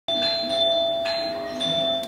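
Electronic doorbell chime playing a short tune of three notes, the second about a second in and the third just after, over a held ringing tone: someone is at the door.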